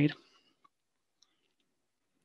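The end of a man's spoken word, then near silence with two faint clicks, about half a second and just over a second in.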